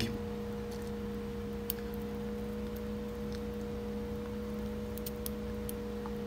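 Quiet room tone: a steady low electrical hum, with a few faint ticks scattered through it.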